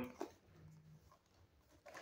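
Near silence: room tone, with a voice trailing off at the start and a faint, brief low hum about half a second in.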